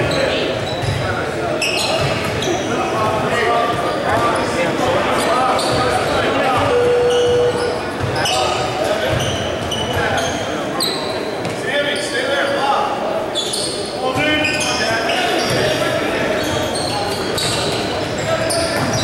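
Basketball game in a large gym: a ball bouncing on the hardwood floor amid the talk of players and spectators, echoing in the hall. A brief steady tone sounds about seven seconds in.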